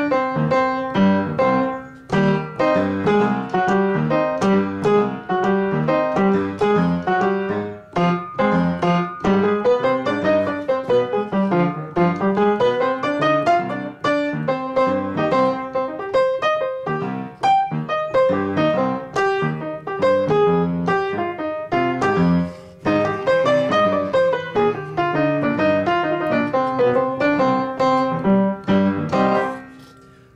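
Upright piano played solo: an improvised line of quick scale runs rising and falling over chords, in phrases with brief breaks. The playing stops right at the end.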